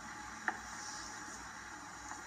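Faint steady background hiss, broken by a single sharp click about half a second in.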